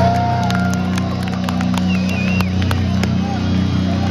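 Live metal band played loud through a stadium PA, heard from within the crowd: a steady low guitar and bass drone, with crowd shouts and scattered sharp claps over it.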